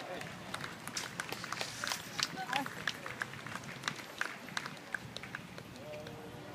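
Scattered, irregular handclaps from a few spectators at an outdoor ballgame, with faint distant voices underneath.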